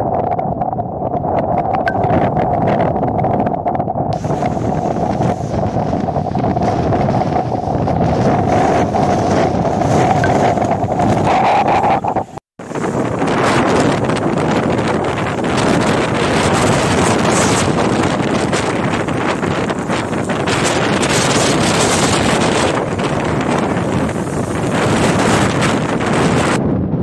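Storm wind buffeting the microphone over rough sea breaking against a seawall, with a steady tone through the first half. The sound drops out for a moment about halfway through and comes back as denser wind and surf noise.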